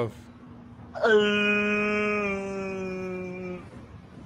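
A person's voice holding one long note for about two and a half seconds, starting about a second in, its pitch steady and then sinking slightly as it fades.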